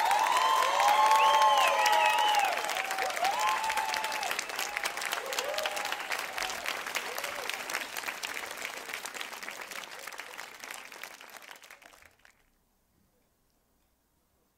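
Audience applauding and cheering, with whoops and shouts over the clapping in the first few seconds. The applause then thins and dies away about twelve seconds in, leaving near silence.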